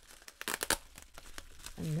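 Plastic bubble wrap crinkling and rustling as hands handle and pull it off, with a cluster of crackles about half a second in.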